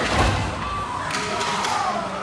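Ice hockey rink sounds at a scramble in front of the net: a heavy thud a fraction of a second in, then a few sharp clacks of sticks and puck, over the murmur of the rink.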